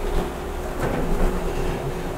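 Steady mechanical hum: a constant mid-pitched tone over a low rumble.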